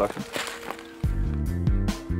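Background music with a bass line and a steady drum beat comes in about a second in, just after a man's voice finishes a short phrase.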